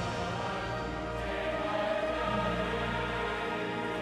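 Choral music playing, with voices holding sustained chords.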